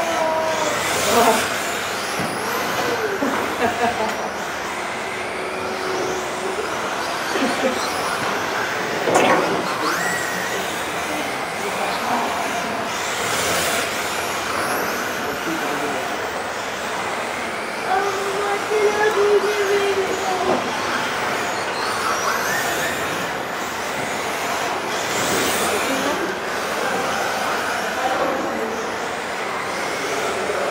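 Several electric radio-controlled model cars running laps on a carpet track, their motors whining up and down in pitch as they speed up and brake.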